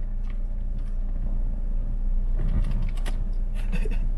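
Steady low hum of a car's idling engine, heard inside the cabin, with a few faint clicks and taps from someone groping for a dropped lighter between the seats.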